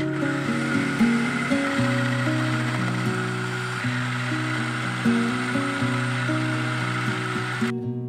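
Electric food processor running, shredding cabbage fed down its tube, a steady grinding whirr that stops suddenly near the end. Acoustic guitar music plays underneath.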